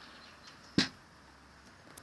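A single sharp knock about three-quarters of a second in, an object being set down on a wooden table, followed by a faint click near the end.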